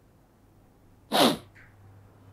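A man's single short, sharp burst of breath about a second in, after a second of quiet room tone.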